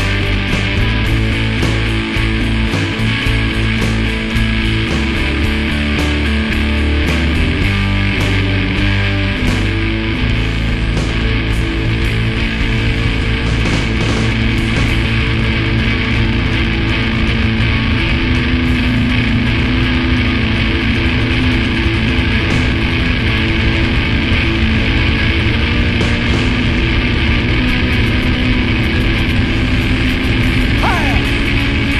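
Instrumental rock passage: electric guitar, bass and drums playing steadily, with no singing.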